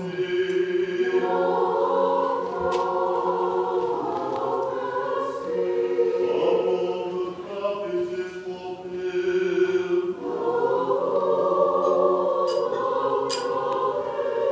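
Church choir singing a Christmas hymn, many voices holding sustained chords. It softens in the middle and swells again about ten seconds in.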